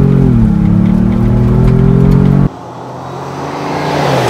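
Ford Bronco's engine at full throttle heard from inside the cabin, its pitch dipping briefly and then climbing steadily. About two and a half seconds in the sound cuts to the Bronco driving past on a dirt road, with tyre and gravel noise swelling as it approaches and the engine note falling as it goes by.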